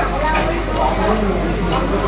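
Voices of people talking, with a steady low hum underneath.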